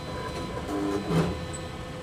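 Steady hum of a powered-up C.P. Bourg BB3002 perfect binder standing idle, a constant tone with fainter higher overtones. A short murmured voice sound comes about halfway through.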